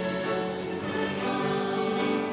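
Mixed-voice youth choir singing, holding sustained chords that change a few times.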